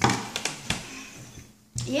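A short wordless vocal sound from a person that fades out, followed by a few light taps and a brief lull, then speech begins near the end.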